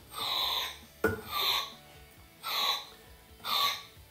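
Short shots of CO2 gas hissing from a keg gas post into the necks of plastic beer bottles, four bursts about a second apart, each with a breathy, panpipe-like tone. It is the gas purging air and oxygen from the bottle headspace before capping.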